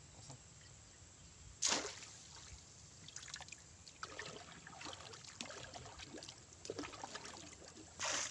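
One sharp splash about two seconds in, then a wooden paddle dipping into the river, with small irregular splashes and water trickling and dripping off the blade.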